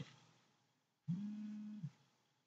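A man's short closed-mouth hum, 'mmm', held on one steady pitch for under a second: a hesitation sound while he thinks of what to say. It comes about a second in, after near silence.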